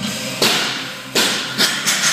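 A barbell loaded with bumper plates dropped from overhead onto the lifting platform: a heavy thud about half a second in, then three more impacts over the next second and a half as it bounces and settles.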